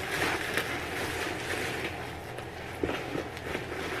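Electric fan running steadily, a constant airy rush with a low hum underneath. A few light knocks and rustles of things being handled come near the end.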